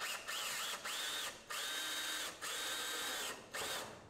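Cordless drill driving a sheet metal screw through the slide lock's bracket into the garage door's steel track. The motor whines in about five bursts, each rising in pitch and then holding, the later bursts longer.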